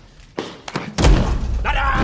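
Two light knocks, then a heavy thud about a second in with a low rumble ringing on after it: a man's head slammed face-down onto a table in a film fight scene.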